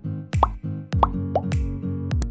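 Background electronic music with a steady beat of bass hits that drop in pitch, and three short rising 'bloop' sounds in the first second and a half.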